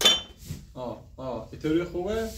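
A sharp clink with a brief high ring at the very start, then a person speaking a few short bursts.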